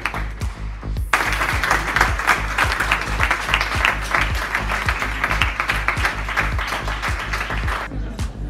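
Background music with a steady beat, with a large audience clapping densely from about a second in.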